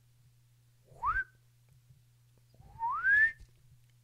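Ultem top cap squeaking as it is spun and pushed down onto a TM24 atomizer: two rising squeaks, a short one about a second in and a longer one near the end, with light handling knocks.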